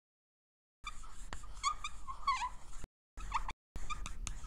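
Marker pen squeaking and scratching across the drawing surface in drawn strokes, starting about a second in, with short gaps near three seconds.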